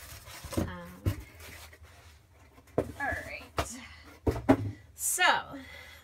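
Cardboard shipping box and packaged sticker sets being handled: several sharp knocks and rustles as the items come out and the box is moved aside, the loudest knock about four and a half seconds in. Brief murmured vocal sounds come in between.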